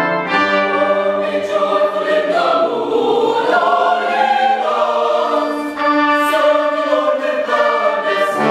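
Mixed high school choir singing a classical choral piece in sustained, held chords.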